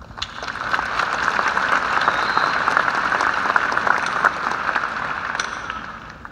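Audience applauding, swelling over the first second and dying away near the end.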